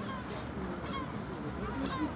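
Birds calling in the distance: short, downward-sliding calls repeated about every half second, over a steady low hum.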